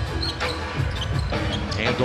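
A basketball being dribbled on a hardwood arena court, several bounces, over arena background noise.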